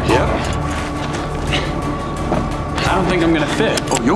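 Film soundtrack mix: a steady low rumble with a music score, under a man's short wordless vocal sounds a few times.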